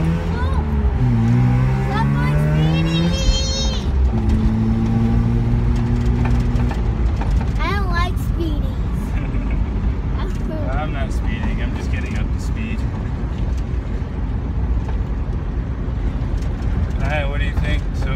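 Mazda RX-7's rotary engine accelerating through the gears, heard from inside the cabin: the pitch climbs, drops at a shift about a second in, climbs again until a second shift near four seconds, then holds steady for a few seconds before giving way to steady road noise.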